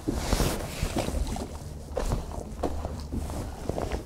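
Wind buffeting the microphone on an open boat, a steady low rumble, with scattered light knocks and rustles of handling on deck and a brief hissing rush about half a second in.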